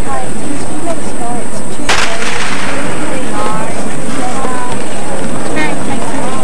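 A starting pistol fires once about two seconds in, the signal that starts the 100 m sprint. Spectators' voices call out after the shot.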